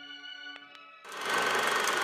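Soft music with sustained notes and a couple of plucked notes, then about a second in a film-projector clatter starts abruptly and runs on as a transition sound effect, louder than the music.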